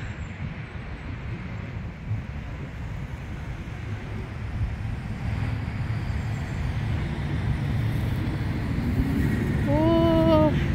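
Outdoor background rumble, a steady low noise without any clear tone that grows gradually louder toward the end.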